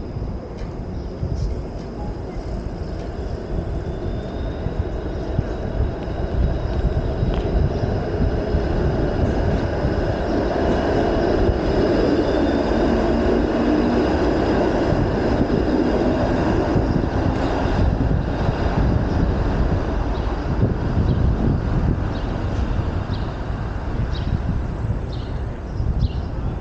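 TTC Flexity Outlook streetcar running on the rails right alongside: a rumble with a steady high whine that swells to its loudest around the middle and then fades.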